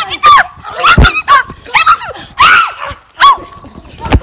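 Women yelling and shrieking in a physical scuffle: a string of short, high-pitched cries, with a dull thump about a second in.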